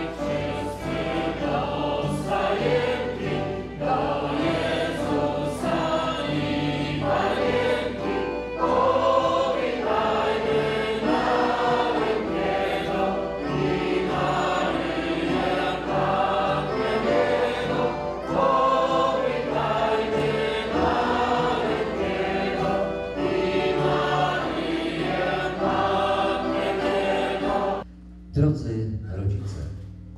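A Polish Christmas carol (kolęda) sung by a group of voices, accompanied by a small band of accordion, violin, flute, guitar and keyboard.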